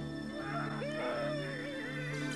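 Background music with sustained low notes. From about half a second in, a wavering, sliding pitched cry joins it.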